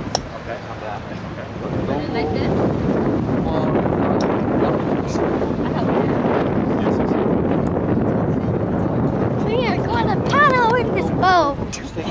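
Wind buffeting the camcorder microphone in a steady rush, with indistinct voices around; near the end a child's high voice rises and falls.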